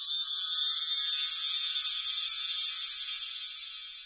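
High, shimmering chime sound effect: many steady high tones ringing together, fading slowly.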